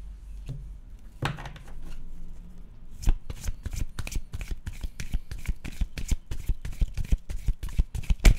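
A deck of tarot cards being shuffled by hand, starting with a few soft handling sounds. About three seconds in comes a fast run of card clicks and snaps.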